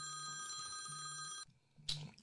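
Phone ringtone of an incoming call: a steady electronic ring that cuts off suddenly about a second and a half in. A short click follows near the end.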